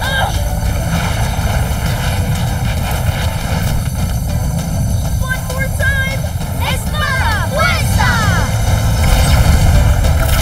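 Cartoon sound effect of a magic sword's light beam: a steady, loud low rumble that swells slightly toward the end. Children's wordless excited cries and shouts come in the middle.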